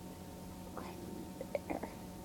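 Quiet room with a steady faint hum, and a few short, soft sounds in the second half as a lipstick is handled and swatched on the back of a hand.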